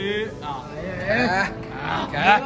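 A man's voice making drawn-out wordless calls: one trails off just after the start, and another rises and falls about a second in.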